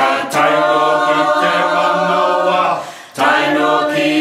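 Group of voices singing a Moriori chant unaccompanied, in long held notes that step between pitches, with a short break for breath about three seconds in before the next phrase.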